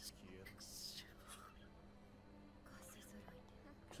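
Near silence with faint, hushed voices, heard mostly as soft hissing sibilants.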